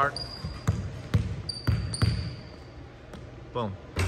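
A basketball dribbled four times in quick succession on a hardwood gym floor, with short high squeaks of sneakers on the boards as the player works the ball into a shot.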